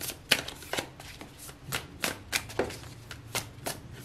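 A tarot deck being shuffled overhand: packets of cards dropped from one hand onto the deck, making a string of irregular crisp clicks, about three a second, the loudest just after the start.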